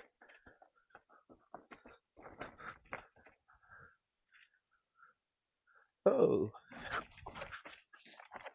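Mountain bike rattling and clicking over a rough dirt trail in short bursts of knocks. About six seconds in comes the loudest sound, a rider's startled 'oh' on a tricky, unexpected section, followed by a dense clatter of the bike over the rough ground.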